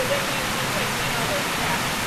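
Small mountain stream cascading over rocks, a steady rush of water close by.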